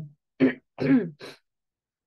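A woman clearing her throat in a few short voiced bursts.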